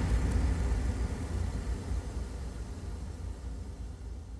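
Tail of an electronic intro jingle: after its last beats, a low rumbling, hissy sound effect fades out steadily.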